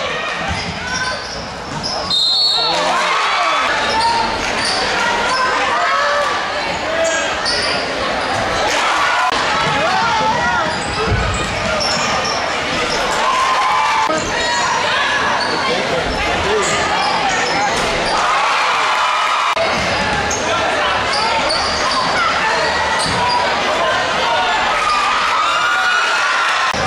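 Live sound of a basketball game in a crowded gym, echoing: crowd voices and shouts, with a ball bouncing on the court and sneakers squeaking, broken by a few abrupt edits between clips.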